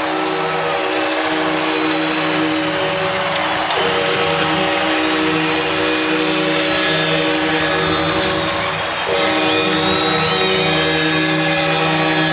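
Arena goal horn sounding a deep multi-tone chord in three long blasts, with short breaks about 4 and 9 seconds in, over a cheering crowd after a home goal.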